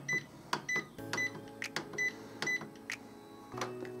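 Epson WorkForce WF-2510 printer's arrow button pressed over and over, each press giving a click and a short high key beep, about two a second, as the display steps through the language list; the presses stop about three seconds in.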